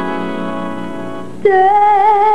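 Live music: sustained keyboard chords fade slowly, then about one and a half seconds in a singer comes in loudly on a long held note with vibrato.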